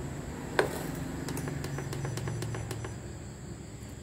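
A stainless steel pot is set down on the glass top of a Hiron infrared cooker with a sharp clunk about half a second in. Then a low hum and a run of quick clicks follow for about two seconds as the cooker powers up and its heating ring comes on.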